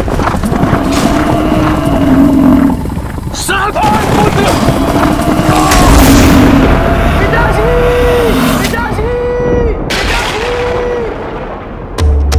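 Dramatic sound design for a charging buffalo demon: long, deep, voice-like calls that rise and fall over heavy booming rumble. Three shorter, identical, higher calls come near the end.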